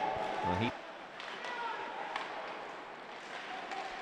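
Ice hockey game sound in a rink during live play: a steady low hiss of arena noise with a few faint clacks.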